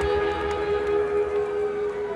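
Live rock band music amplified in a concert hall: a held, ringing chord or drone sustains steadily while the low-end rumble drops away about one and a half seconds in.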